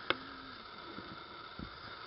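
Faint, steady hiss of outdoor background noise, with one sharp click just after the start followed by a brief low hum.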